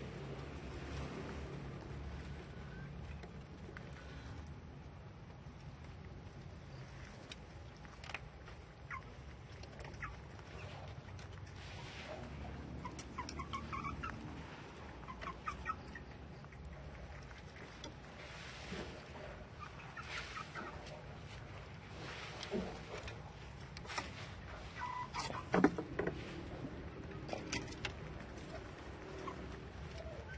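Scattered short animal calls and small clicks over a steady low hum, with one sharp louder click about 25 seconds in.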